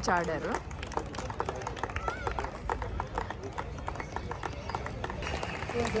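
Scattered applause from a small group: many irregular hand claps at an even, moderate level, over faint background murmur.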